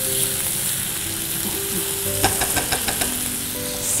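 Squid rings sizzling in hot oil in a nonstick frying pan with onion and tomato, stirred with a spatula, with a few light clicks a little past the halfway mark.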